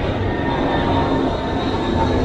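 Loud, steady mechanical rumble with a thin, steady whine above it.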